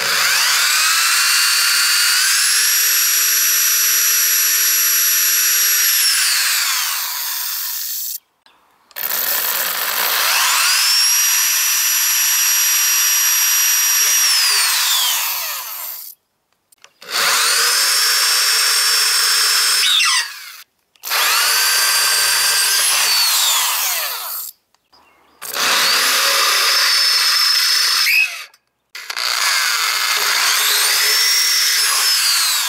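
Corded electric drill boring holes into a steel trailer upright. The motor runs in six separate bursts with short pauses between. Each time it whines up to speed, holds a steady pitch, then falls in pitch as the trigger is let go.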